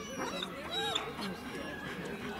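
A dog whimpering briefly, with people talking in the background.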